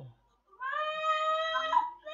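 One long, high-pitched call, held nearly steady in pitch for over a second, coming through a video-call participant's microphone.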